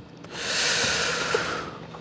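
A man's long exhale into a close microphone, a breathy rush of air that swells and fades over about a second and a half.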